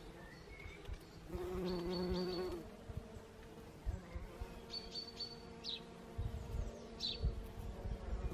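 A bumblebee buzzing in flight close by, a low hum that swells from about a second in and lasts a little over a second, with fainter buzzing after. Short high bird chirps come a few times, and there are a few low thumps near the end.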